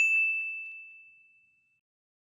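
A single bright, bell-like notification ding, the sound effect for clicking a subscribe button's bell icon. It strikes once and fades away over about a second and a half.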